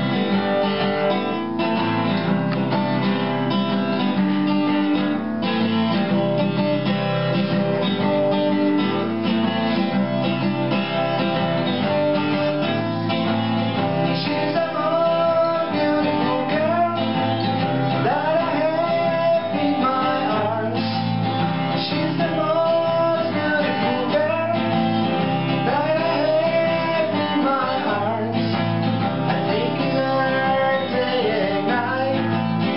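Two acoustic guitars playing a song together, steady strummed and picked chords. A man's voice starts singing over them about halfway through.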